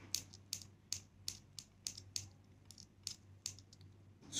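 Magnetic metal earbud shells of a Kites Air KA-BT220 neckband clicking together again and again, a string of light, sharp, irregular clicks as the magnets snap them shut.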